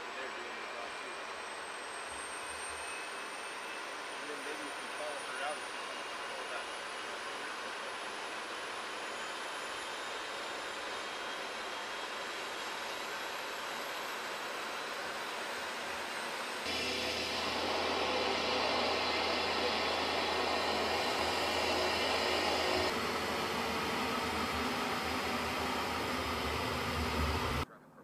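MQ-9 Reaper's turboprop engine running on the ground with its propeller turning, a steady noise with a faint high whine slowly rising in pitch. About 17 seconds in the aircraft noise gets louder, and it cuts off suddenly near the end.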